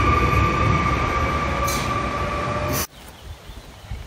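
PESA Elf electric multiple unit train approaching along a station platform: a steady rumble with a steady high whine over it. It cuts off suddenly a little under three seconds in, leaving a much quieter background.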